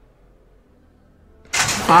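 Faint low background, then about a second and a half in a sudden loud clang as the horse-racing starting gate's doors spring open for the break. A man's long shout begins right at the end.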